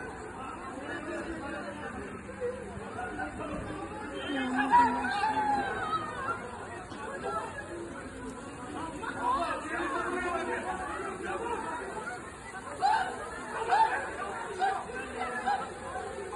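Several people talking over one another in indistinct chatter, with no clear words standing out.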